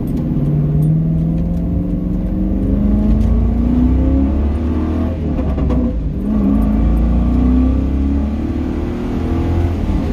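Ford Mustang GT's 4.6-litre two-valve V8 accelerating through the gears of a manual gearbox, heard from inside the car. The engine note rises for about five seconds, drops at an upshift about six seconds in, then climbs again and dips once more near the end.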